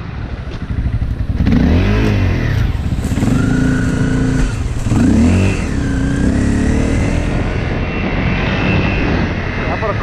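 Dirt bike engine heard from the rider's helmet, revving up and down several times as it is ridden along a trail, over a steady rush of noise.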